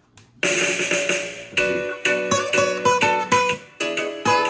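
Acoustic guitar played solo: a chord rings out about half a second in, then a melodic line of single picked notes follows, a few a second. The line is played to bring out the chord changes.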